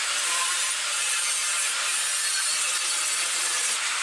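Handheld angle grinder with a thin cut-off disc running and cutting through sheet metal, a steady grinding hiss.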